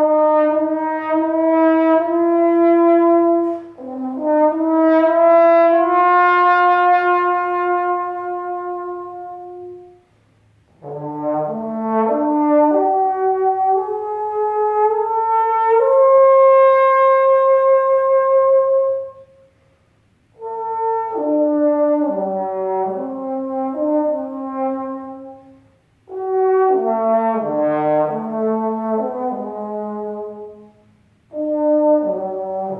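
Unaccompanied trombone playing a slow melodic line of long held notes and moving passages, in four phrases with brief breaks for breath between them.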